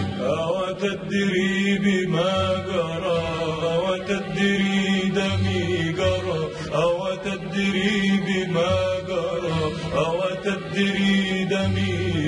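Classical Arabic orchestral music: a male voice sings long, gliding, ornamented phrases over a string orchestra, with sustained low notes underneath.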